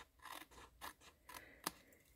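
Paper snips cutting paper: a few short, faint snips, the sharpest about three-quarters of the way through.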